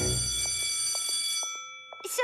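A bright, bell-like ringing tone that starts suddenly and fades out over about a second and a half, over a low rumble that dies away within the first second.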